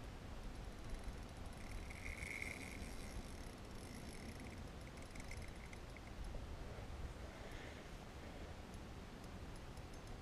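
Fishing reel's drag buzzing briefly, then clicking in short spells as a big redfish pulls out line, over a low rumble of wind on the microphone.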